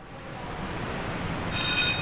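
Steady background noise, then, about one and a half seconds in, a loud high ringing tone like a phone ringer or bell, lasting about half a second.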